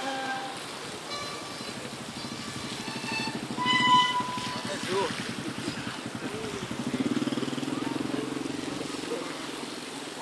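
A motor vehicle's engine running with a low, fast pulsing, growing louder about seven seconds in and easing off near the end. A few short, clear ringing tones sound over it in the first four seconds.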